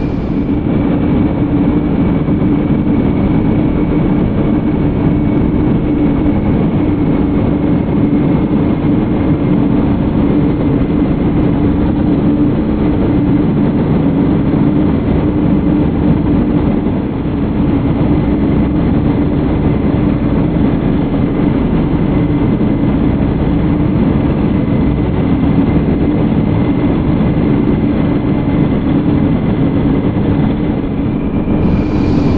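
Steady, loud drone of an aircraft's engines with a low hum, unchanging throughout apart from a brief dip about halfway through.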